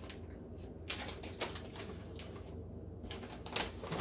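Plastic food packaging crinkling and rustling as bags are handled, a few short crackles about a second in and again near the end, over a steady low hum.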